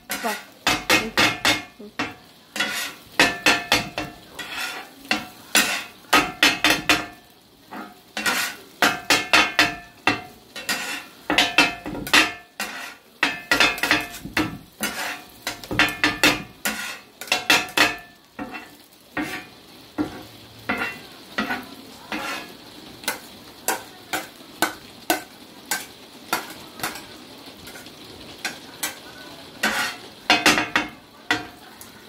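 Kottu roti being chopped on a hot flat-top griddle with two metal blades: rapid, rhythmic clanging strikes in quick bursts, metal ringing on metal, over a steady sizzle. After about twenty seconds the strikes grow lighter and sparser and the sizzle stands out more.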